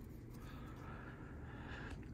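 Quiet room tone with a low steady hum and faint rustling of trading cards being shuffled by hand.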